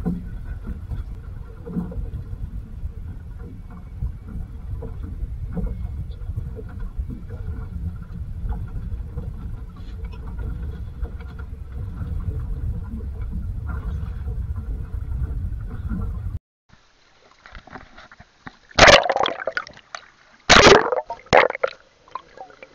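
Steady low rumble of wind and sea around a small open fishing boat at sea, with small knocks. After a sudden cut it turns into the muffled sound of an underwater camera, with two loud rushes of water over it about two seconds apart.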